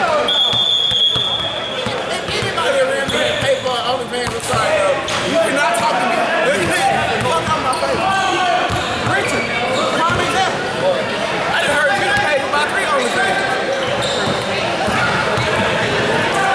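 Basketballs bouncing on a hardwood gym floor, the thuds echoing in a large hall over a steady background of voices.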